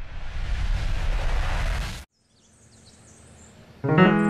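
A loud rushing, wind-like noise over a low rumble swells and then cuts off abruptly about halfway through. Faint high bird chirps follow, and a piano begins right at the end.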